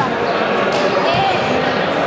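Several voices shouting and talking over one another, echoing in a large sports hall, with a few dull thuds among them.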